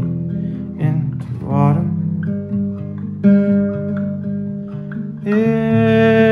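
Acoustic guitar in open tuning strummed and picked, with a man's singing voice coming in briefly and then holding one long note near the end.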